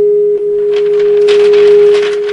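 Microphone feedback from the meeting-room PA system: one loud, steady, unchanging tone. A rustling noise rises over it from about a third of the way in.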